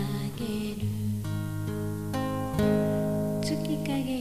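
Acoustic guitar strummed in sustained chords, changing chord several times, as accompaniment to a slow ballad.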